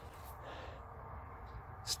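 Faint steady outdoor background noise with no distinct event.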